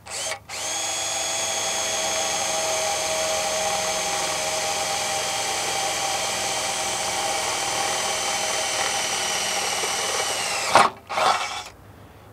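Electric drill with a 3/8-inch twist bit boring through a shade's metal back housing: a short blip, then a steady whine for about ten seconds that drops slightly in pitch as it stops, followed by a couple of short bursts.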